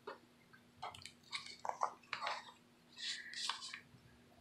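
Pages of a handmade fabric, lace and paper junk journal being turned and handled: a string of short rustles and soft scrapes, the longest near the end.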